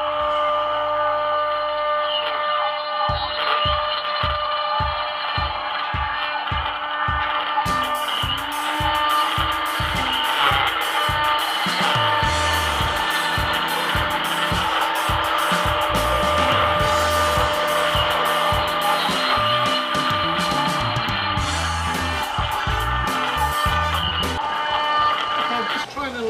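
Background music with a steady beat plays over the steady whine of a CNC router spindle cutting wood. About a third of the way in, a shop vacuum adds a hiss as it clears the chips, and it stops a few seconds before the end.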